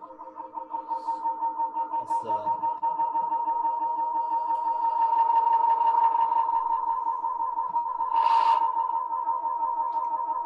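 Modular synthesizer drone: a clock-stretched sample sent through a spring reverb into feedback. It forms a steady chord of held tones with a fine pulsing texture, a quite celestial sort of feedback, swelling in loudness over the first few seconds. There are short hissy bursts about two seconds in and near the end.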